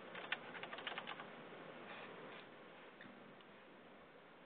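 Faint computer keyboard typing heard over a conference-call line: a run of irregular clicks for about the first second, then only a low line hiss.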